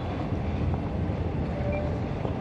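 City street ambience: a steady low rumble with no distinct events.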